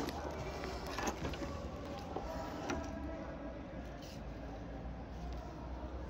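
A steady low background rumble with a sharp click at the very start and a few faint ticks.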